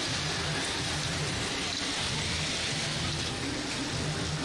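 Steady din of a crowd in a gymnasium arena with robots working the field, an even wash of noise with no single sound standing out.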